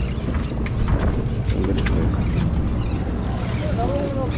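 Steady low hum of a sportfishing boat's engine, with wind on the microphone and a few sharp clicks in the first couple of seconds.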